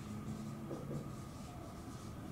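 Dry-erase marker writing on a whiteboard in a series of short, faint strokes.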